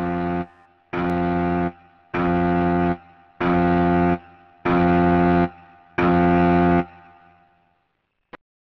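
An alarm horn sounding six identical low blasts, each just under a second long, evenly spaced a little over a second apart; the last one fades out.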